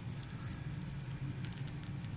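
Steady low hum of aquarium equipment, with faint water sloshing and small drips as a fish net is moved through the tank water.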